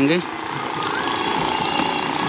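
A machine running close by with a steady, rapid rattle.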